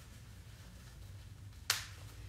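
A single sharp click near the end as a popper (press stud) on a cloth nappy is snapped, with a faint low hum under a quiet stretch.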